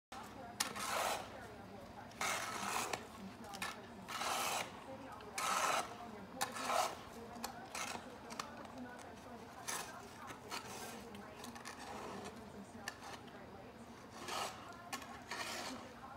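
Snow shovel blade scraping over snow in a series of short, irregular drags as a dog tugs it along by the handle, with a quieter stretch in the middle.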